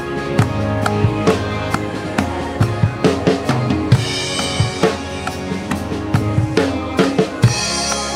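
Acoustic drum kit played in a steady groove, kick and snare struck on the beat, over a backing track of sustained keys and pads. Cymbal crashes come in about four seconds in and again near the end.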